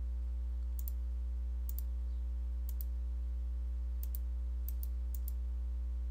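Computer mouse clicking several times, each click a quick press-and-release pair, over a steady low electrical hum that is the loudest sound throughout.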